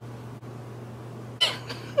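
A house cat meows briefly about one and a half seconds in, over a low steady hum.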